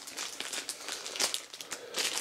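Clear plastic tool packaging crinkling and rustling in a hand, a scatter of short crackles with the loudest about a second in.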